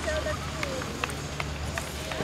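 Distant, indistinct voices calling out in short bits over a steady low hum, with a few light clicks.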